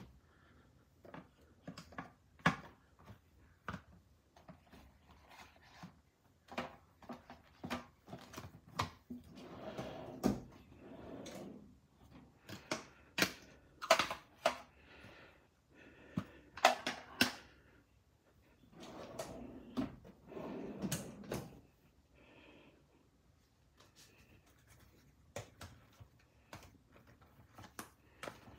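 Wallets being handled in a drawer: quiet, irregular taps and clicks as leather and metal card wallets are touched, lifted and set back down, with a few short rustles.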